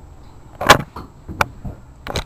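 Movement and handling noise as a person gets up from a chair: a loud rustling burst about two-thirds of a second in, then a few short, sharp knocks.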